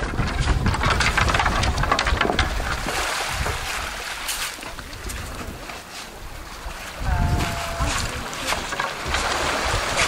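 Small waves washing over a pebble shore and water sloshing around a wooden plank canoe as it is pushed out through the shallows, with heavy wind rumble on the microphone.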